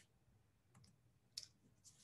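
Near silence broken by a few faint, short clicks, the clearest one just past halfway.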